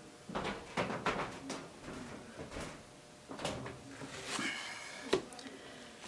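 Handling of a small plastic paint cup: soft rustles and light taps as it is lifted away from the canvas, then a sharp knock about five seconds in as it is set down on the table.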